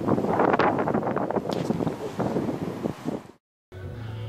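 Irregular wind noise buffeting the microphone, cutting off abruptly a little over three seconds in. Background music starts just after.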